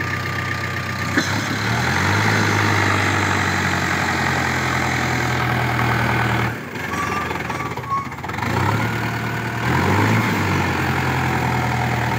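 Mahindra Arjun tractor's diesel engine running steadily under load as it hauls two trailers heavily loaded with sugarcane. The drone dips briefly just past halfway, then picks up again.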